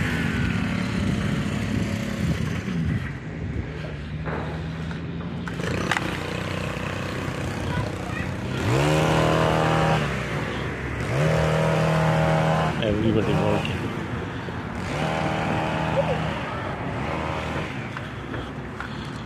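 Small petrol engine of a landscaping power tool running, revved up three times in short bursts of about a second and a half, each time rising in pitch, holding steady, then dropping back.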